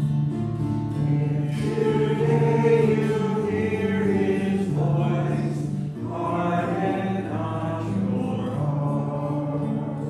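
Sung responsorial psalm: voices singing slow, held lines to acoustic guitar accompaniment.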